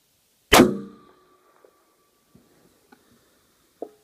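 A single .300 WSM rifle shot about half a second in: a sharp, loud blast that dies away over about half a second. A few faint clicks follow, and near the end a short faint ping comes in at the time the bullet's strike on the 800-yard steel plate would be heard.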